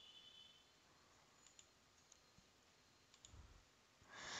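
Near silence: room tone with a few faint, short computer mouse clicks.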